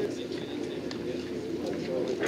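Indistinct chatter of people's voices, with no clear words, along with a few faint clicks.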